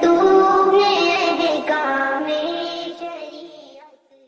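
A woman's voice singing an Urdu nazam, drawing out long, wavering held notes, fading out near the end.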